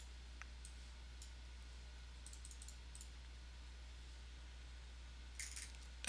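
Scattered faint computer mouse clicks over a low steady electrical hum, with a small cluster of clicks about halfway through.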